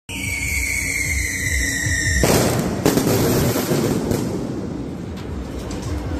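Daytime fireworks: a steady whistling tone for about two seconds, then a sudden, dense, continuous crackle of exploding shells and firecrackers.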